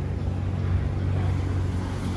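A motor running with a steady low hum.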